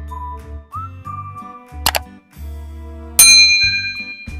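Light children's background music with a whistled melody over a bass beat. About two seconds in a sharp click sounds, and a little past three seconds a loud bell ding rings out and fades: the click-and-bell sound effect of a YouTube subscribe-button animation.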